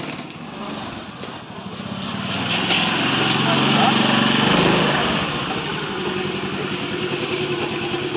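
Small motor scooter engine running as the scooter rides off, growing louder until about halfway through and then running steadily.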